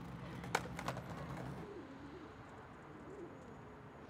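Pigeons cooing softly over quiet city ambience. A low engine hum dies away in the first second or two.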